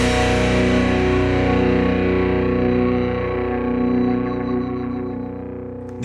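Music: a single distorted electric guitar chord, struck once and left ringing, slowly fading away.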